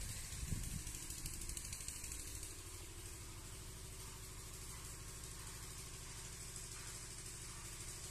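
A steady low engine hum runs throughout, with a few soft low thumps in the first second.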